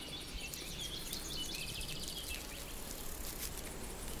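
Meadow insects stridulating in the grass: runs of rapid, high chirping over a low steady rumble.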